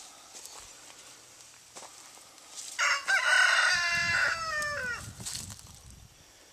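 A rooster crowing once, loudly, starting nearly three seconds in and lasting about two seconds, with the call dropping in pitch at the end.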